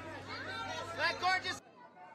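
Overlapping voices of a red-carpet press crowd calling out at once, with a steady low hum, loudest just after a second in. The sound cuts off abruptly at an edit about a second and a half in, leaving only faint chatter.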